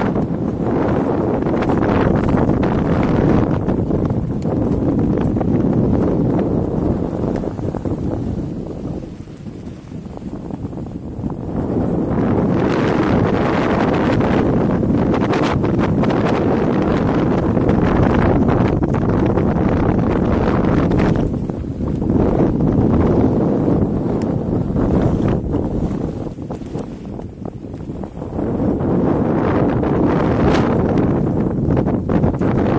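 Strong gusting mountain wind buffeting the microphone in a loud, rough rumble, easing into lulls about nine seconds in and again near the end.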